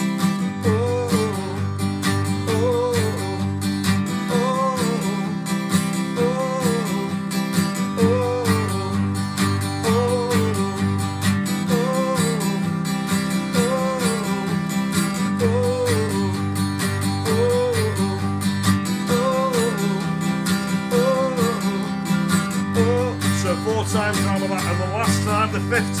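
Acoustic guitar strummed steadily, going back and forth between a C chord held for two bars and a G chord, with the bass changing every few seconds and a short repeated melodic flourish about every two seconds.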